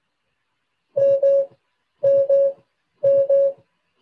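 Tesla Autopilot's hands-on-wheel warning chime: a double beep repeating about once a second, three times, starting about a second in. It is the car's nag that the driver must apply turning force to the steering wheel, and it keeps sounding until a hand is put back on the wheel.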